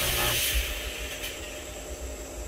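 Two vertical fog machines blasting jets of fog upward with a loud rushing hiss that drops away about half a second in, leaving a fainter steady hiss.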